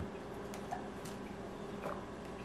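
Quiet room tone with faint swallowing as a drink is gulped from a plastic cup, with two small clicks about a second apart.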